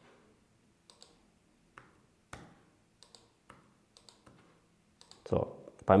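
Sparse computer mouse clicks and keyboard keystrokes, about a dozen short separate clicks, made while picking an entry from a dropdown and typing numbers into form fields.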